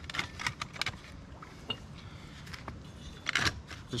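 Thin wooden shims clattering and knocking as they are set under a steel jacking tool on concrete: scattered light clicks, with a louder cluster of knocks near the end.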